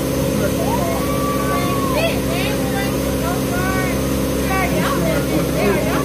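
Motorboat engine running steadily with a low, even drone, with people's voices talking over it.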